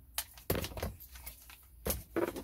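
A few plastic clicks and knocks as the loose dash trim bezel is handled and set aside, the loudest near the end.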